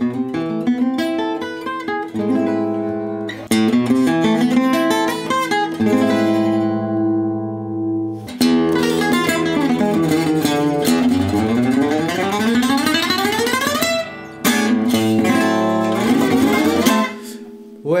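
Oval-hole Gypsy jazz (Selmer-Maccaferri style) acoustic guitar played with a pick. For the first eight seconds or so a single-note line is played with alternate or flat picking, ending on a chord left to ring. Then, after a sudden break, fast runs with rising lines are played with rest-stroke (Gypsy) picking.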